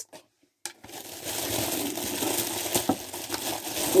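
Packaging sachets crinkling as they are handled, beginning about a second in, with a few small clicks.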